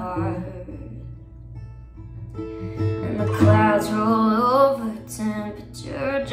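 Acoustic guitar, capoed, strummed in steady chords under a woman's singing voice. A brief sung tail comes at the start and a longer sung phrase with vibrato runs from about halfway through.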